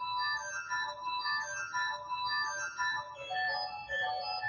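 Visser-Rowland pipe organ playing a quick passage of short notes high in the treble, several voices at once; about three seconds in, lower notes join beneath.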